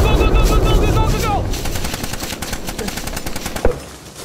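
Automatic rifle fire in a firefight: rapid overlapping shots, dense at first and thinning out, with one louder shot near the end. A high wavering cry sounds over the first second and a half.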